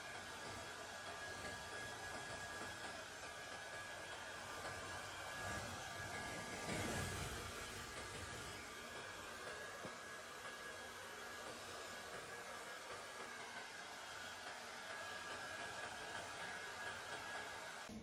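A blow dryer runs with a steady, faint whir and a thin high tone, drying a freshly bathed dog's wet coat. It stops just before the end. About seven seconds in there is a brief muffled rustle of handling.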